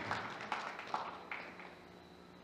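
Audience applause dying away, with a few last scattered claps before it fades out.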